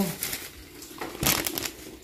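A brief crinkling rustle, a little after a second in, of something being handled close to the microphone, such as plastic or paper.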